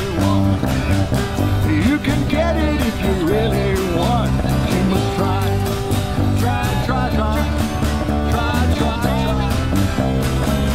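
A live band playing an upbeat song through a passage without words, an acoustic guitar among the instruments, with a melody line that slides between notes over it.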